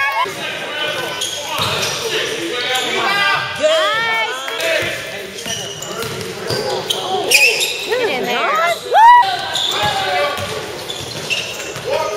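Basketball game play on a hardwood gym floor: sneakers squeaking in many short sharp chirps and a basketball bouncing, with voices around the court.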